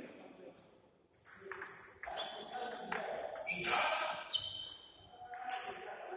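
Table tennis ball played back and forth in a rally: sharp, irregular clicks of the celluloid ball striking the bats and bouncing on the table.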